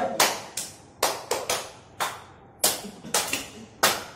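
Single hand claps by different people, about eleven in an uneven sequence with some coming in quick pairs and triples, passed one after another around a standing circle of people.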